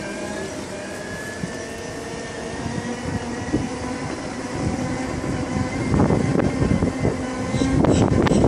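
Segway personal transporters' electric drives whining in steady tones that drift slowly in pitch as they roll along. A louder, rough noise joins from about six seconds in.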